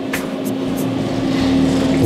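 Elevator car travelling: a steady mechanical hum with a rush of air that swells near the end.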